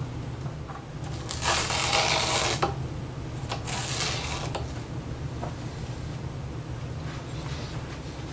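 Scissors cutting foam padding under a guitar pickup: two cuts, each about a second long, with a few light clicks in between.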